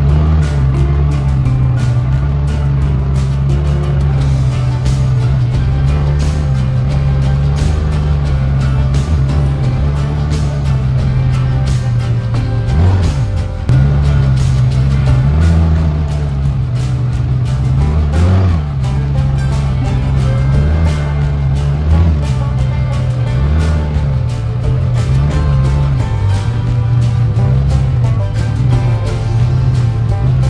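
A CFMoto UForce 600 side-by-side's engine running steadily as it drives a rough dirt trail, with frequent knocks and rattles from the bumps. The engine speeds up briefly twice, about halfway through. Music plays over it.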